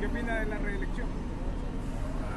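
Outdoor street background with a steady low rumble of traffic and faint voices, mostly in the first second.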